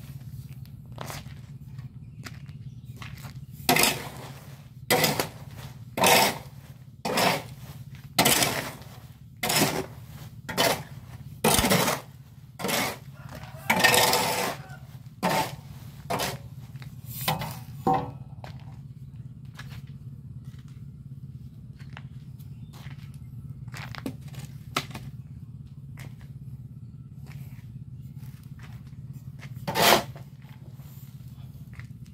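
Metal blade of a hoe scraping over a concrete floor and gritty crushed cement, in about a dozen loud strokes roughly one a second, then only faint scrapes and clicks, with one more loud stroke at the end. A steady low hum runs underneath.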